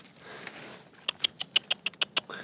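A quick, irregular run of sharp clicks and crackles starting about a second in, from a Pacific madrone branch and its stiff, leathery leaves being grabbed and pulled down by hand.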